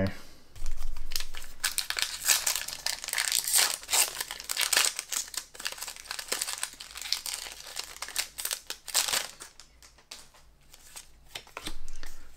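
Foil booster pack wrapper crinkling and tearing as it is opened by hand: a dense run of crackles that thins out and quietens over the last couple of seconds.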